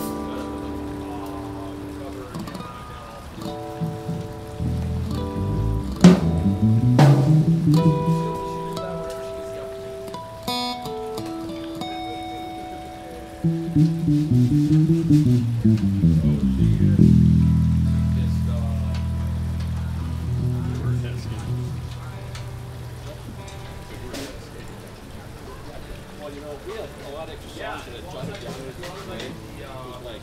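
Acoustic-electric guitars and a bass guitar being tried out through the amps with no song played: scattered picked notes and chords, bass notes sliding up and down twice, and a long held low bass note about halfway through before it thins out to sparse noodling. A sharp click sounds about six seconds in.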